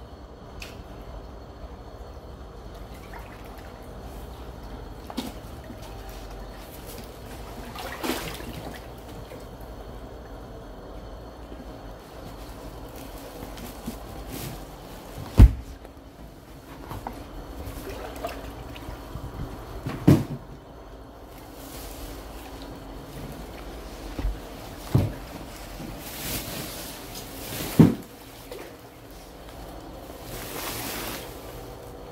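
Floodwater inside a flooded shop sloshing and trickling as someone wades slowly through it, with about six sudden thumps, the loudest about halfway through.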